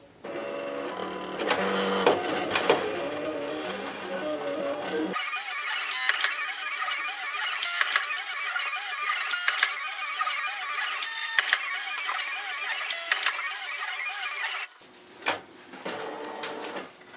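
Silhouette Cameo electronic cutting machine cutting cardstock: its motors whir in short rising and falling glides as the blade carriage moves and the mat feeds back and forth. Music plays in the background.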